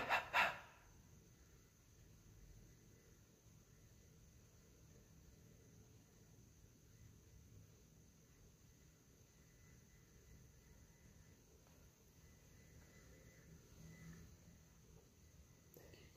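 Near silence: faint room tone, with a few soft, indistinct noises, the clearest about two seconds before the end.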